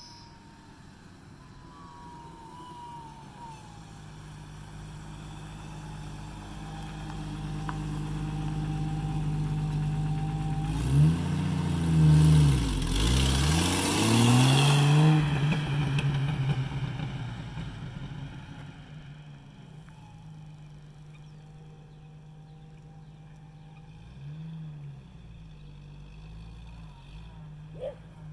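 1993 Jeep Wrangler with the 4.0 L straight-six driving past on a paved road. The engine and tyres grow steadily louder as it approaches, pass loudest about 11 to 15 seconds in with the engine pitch dropping, then fade as it drives away.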